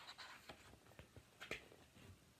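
Faint rustling and light clicks of a paperback picture book's pages being handled and turned, with the strongest rustle about one and a half seconds in.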